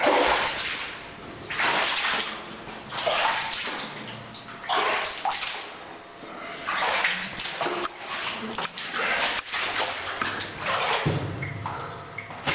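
Footsteps wading through water on a flooded mine-tunnel floor: a splash and slosh with each stride, about every second and a half.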